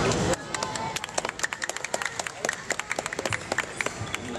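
A quick, irregular run of sharp taps and clicks from a badminton rally: racket strikes on the shuttlecock and players' footfalls on the court, several a second, dying away near the end.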